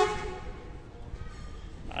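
A short train horn toot at the start that fades away within about half a second, followed by faint low rumble.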